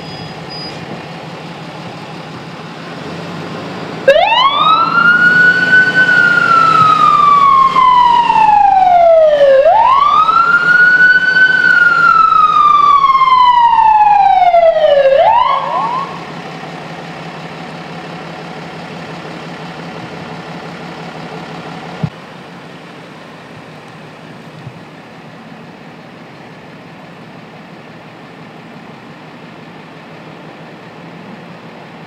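Ambulance electronic siren, loud and close, giving two slow wails that each rise quickly and fall slowly over about five seconds. It starts about four seconds in and stops around fifteen seconds with a short rising chirp, over a steady low engine hum.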